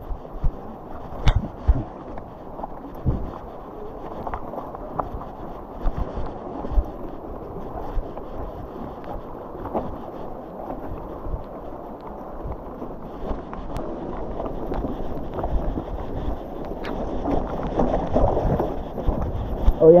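Mountain bike rolling over a rocky riverbed trail of loose stones: a continuous rumble of tyres on rock and gravel, broken by frequent sharp knocks and clatters as the bike jolts over stones, with wind buffeting the microphone.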